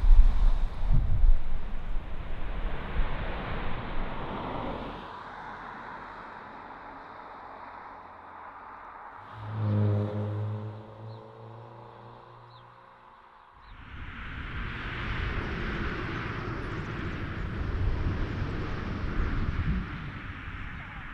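Jet airliner sounds over several cuts: a Ryanair Boeing 737-800 rolling out after landing gives a loud low rumble with wind buffeting the microphone, fading after a few seconds. About ten seconds in comes a pitched engine hum with several tones sinking slightly in pitch, and from about 14 s a steady rushing noise.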